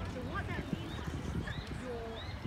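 Indistinct chatter of people sitting on a park lawn, with irregular low knocks and short high chirping glides over it.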